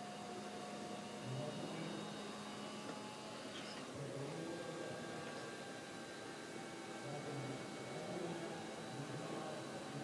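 Steady low background noise of a trade-show hall, with faint distant voices and no distinct sound events.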